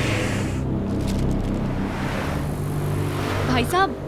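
Car driving along a road, its tyre and engine noise swelling and fading twice, over a low steady drone. A short wavering voice comes in near the end.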